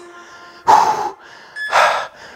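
Two short, sharp breaths by a man, about a second apart, over faint background music.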